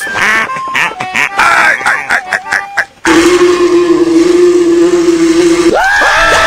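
Cartoon voice clips: a duck-like, chattering cartoon voice with sliding pitch for about three seconds, then a loud yell held on one note that jumps up into a higher scream near the end.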